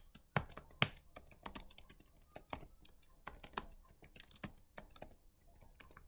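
Typing on a computer keyboard: irregular, uneven key clicks with a brief pause about five seconds in.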